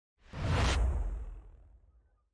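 Whoosh sound effect with a deep low boom beneath it, the intro sting of a logo reveal. The hiss cuts off after about half a second, and the low rumble fades away over the next second and a half.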